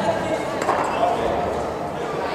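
Voices calling out during an amateur boxing bout, echoing in a large sports hall, with one short rising shout.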